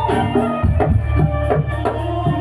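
Jaran kepang dance accompaniment music: drums struck in an uneven pattern over sustained melodic tones.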